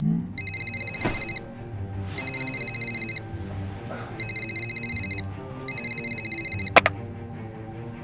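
Telephone ringing in four rings of about a second each, each ring a fast electronic warble. A sharp click follows near the end as the handset is picked up. Background music plays underneath.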